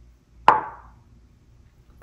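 A twenty-sided die thrown into a hexagonal dice tray, landing with one sharp clack about half a second in that dies away quickly.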